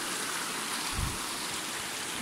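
Shallow mountain stream running over stones, a steady rush of water, with one brief low thump about halfway through.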